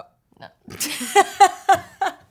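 Two women laughing loudly, a run of breathy pitched bursts about four a second that starts about two-thirds of a second in.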